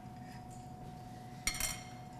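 A single metal clink of a fondue fork against tableware about one and a half seconds in, ringing briefly, over quiet room tone with a faint steady hum.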